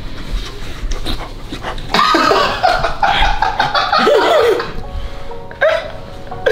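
Men laughing over background music. The laughter comes in loudly about two seconds in, after a few light clicks.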